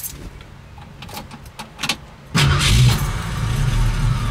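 Keys jangle and click at the ignition, then a little over two seconds in the 1966 Ford Mustang's 289 V8 fires almost at once and settles into a steady idle, starting easily.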